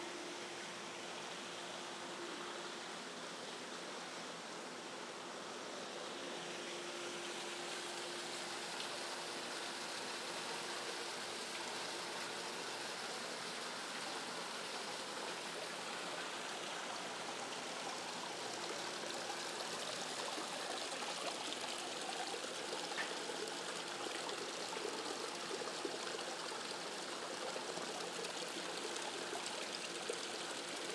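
Small stream and waterfall running over rocks in a steady trickle, growing slightly louder as it comes closer.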